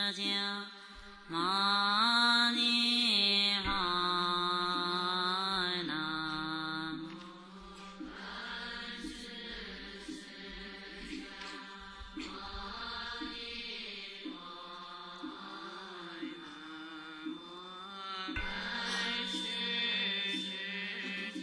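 Melodic Buddhist chanting: a voice holding long, gliding notes over a steady drone. It is louder for the first several seconds, then softer.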